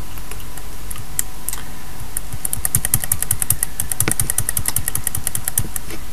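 Computer keyboard keys clicking: a couple of single key presses, then a quick run of typing lasting about three and a half seconds.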